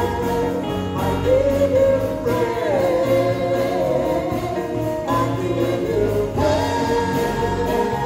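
Gospel praise-and-worship song: a man sings lead into a microphone over musical accompaniment, with other voices singing along behind him.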